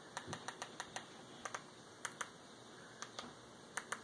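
Remote control buttons clicking as they are pressed to move across an on-screen keyboard: about a dozen faint, sharp clicks at an uneven pace, some in quick pairs.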